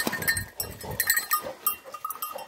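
Hunting dogs worrying at a freshly shot wild boar: irregular short high-pitched whines amid scuffling.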